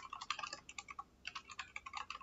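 Computer keyboard typing: a quick run of keystrokes, a short pause about a second in, then another run.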